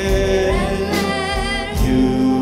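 A school concert band with drums, electric bass and keyboard playing live under a singer's lead vocal, the held sung note wavering with vibrato about halfway through.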